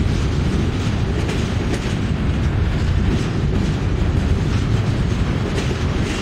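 Freight cars rolling steadily past close by: a continuous rumble of steel wheels on rail, with scattered clicks as the wheels pass over the rail joints.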